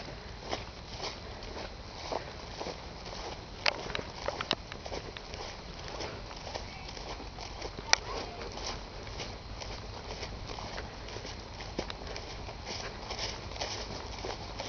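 Footsteps of someone walking through meadow grass, with irregular soft knocks and rustles and a sharp click about eight seconds in. A steady low rumble runs underneath.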